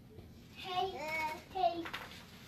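A child's high voice singing a few drawn-out, gliding notes for about a second in the middle, with quiet before it.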